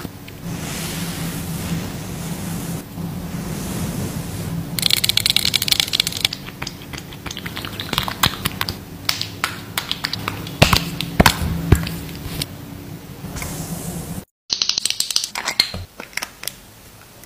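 Close-miked ASMR trigger sounds: a spatula scraping across a bead-covered face mask, then long acrylic nails rubbing and tapping, giving many sharp clicks and crackles over a low steady hum. The sound drops out for a moment near the end, then a new run of taps begins.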